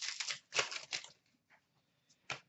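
A hockey card pack's wrapper being torn open and crinkled as the cards are pulled out, a crackling run of rustles in the first half that stops about a second in.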